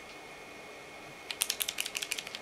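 A quick, uneven run of small sharp clicks from a liquid eyeliner pen being handled, starting about halfway through after a quiet stretch.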